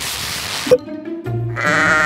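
A short rushing noise that stops about three-quarters of a second in, then a sheep bleat sound effect, one wavering call starting about a second and a half in, over background music.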